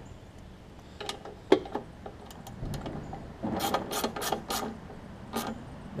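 Ratchet wrench clicking as a bolt is tightened down: a few separate clicks, then a quicker run of clicks about halfway through, and one more near the end.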